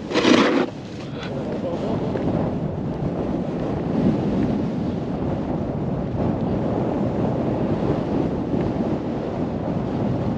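Steady wind rushing over a helmet-mounted action camera's microphone while snowboarding downhill, with a short loud burst of noise right at the start.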